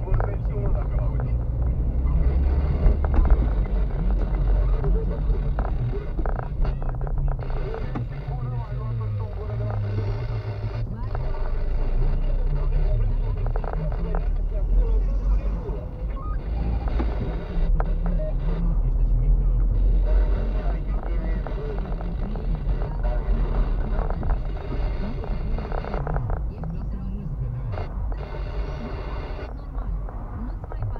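Low engine and road rumble heard from inside a car's cabin as it drives slowly through city streets, with indistinct voices or radio audio over it.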